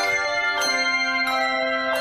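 A peal of bells struck one after another, about one strike every two-thirds of a second, each bell sounding at a different pitch and ringing on into the next.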